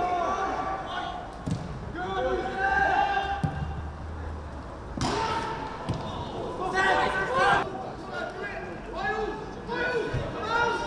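Footballers shouting and calling to each other on the pitch, with a few dull kicks of the ball, the sharpest about five seconds in.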